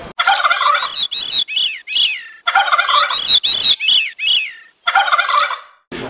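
Loud bird calls, each one arching up then falling in pitch, given in three runs of several calls separated by short silences.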